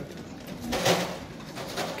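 Pigeon cooing in low, faint tones, with a brief hiss about a second in.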